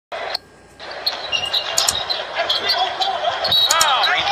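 Basketball game sound on the court: the ball bouncing and sneakers squeaking on the hardwood, over steady arena crowd noise.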